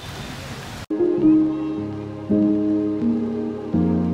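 A short laugh over outdoor ambience, then a cut about a second in to soft outro music: held chords that change every second or so.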